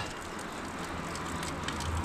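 Fountain water trickling and splashing into a stone basin, a steady hiss with a low rumble beneath.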